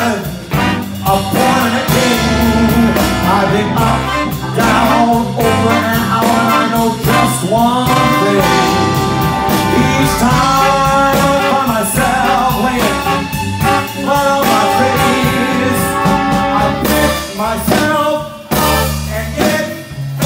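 Live big band music at a swing tempo: a brass section over electric guitar, piano and rhythm section, with a steady beat.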